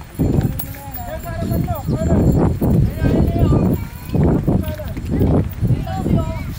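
Indistinct voices of people calling at a distance, over heavy, irregular low thumps and rumbling.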